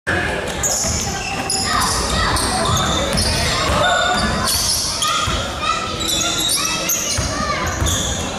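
Basketball being dribbled on a gym's hardwood floor, with repeated thuds. Many short, high-pitched sneaker squeaks come from players cutting on the court, with players' voices in the background of the large, reverberant gym.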